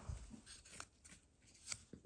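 A few faint clicks of small hard-plastic toy parts being handled in the fingers, a Micro Galaxy Squadron vulture droid with its hatch open.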